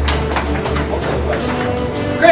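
Background music, with a steady low hum beneath it.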